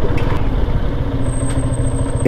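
Motorcycle engine running steadily at low speed as the bike rolls along a rough lane, heard from the rider's seat.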